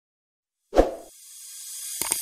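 A sudden single thud about three quarters of a second in, then a hiss that rises steadily in level for about a second, building into the start of the background music.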